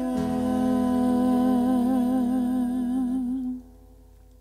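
A woman's voice holding one long final note of a mantra with vibrato, over a low held accompaniment. Both cut off about three and a half seconds in.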